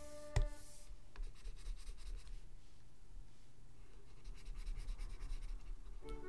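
Stylus scratching on a drawing tablet in short strokes, with a sharp tap of the pen about half a second in. Soft instrumental background music stops during the first second.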